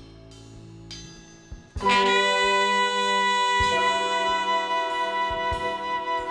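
Live jazz-rock ensemble with saxophones and brass. It opens quietly on soft held notes, then the horns come in loudly together about two seconds in and hold a sustained chord that shifts partway through.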